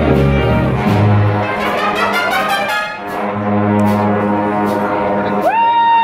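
Live big band playing swing, with the brass section to the fore and a rising run of notes about halfway through.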